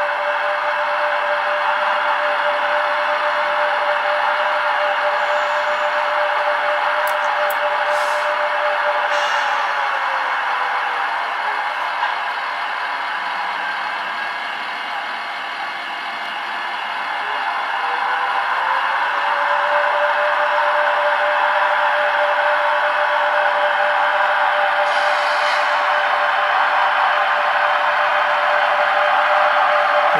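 HO-scale model train running on the layout: a steady motor whine over a rushing track hiss. The whine falls in pitch and fades out about 11 seconds in, then rises back about 19 seconds in.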